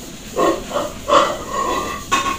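An animal calling: a series of short pitched calls, loudest about a second in, the last held briefly near the end.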